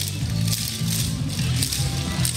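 Yosakoi dance music with a heavy bass line, over which wooden naruko clappers clack repeatedly.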